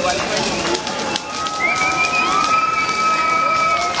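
Crackling and popping of a large burning wood-and-paper effigy. A long, steady high-pitched held tone sounds over it from about a second and a half in until just before the end.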